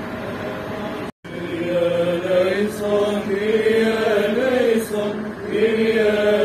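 Male voices chanting an Orthodox liturgical hymn, melodic lines moving over a steady held low note. The chant cuts in after a brief dropout about a second in.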